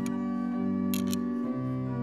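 Organ holding sustained chords, moving to a new chord about a second and a half in, with two short clicks about a second in.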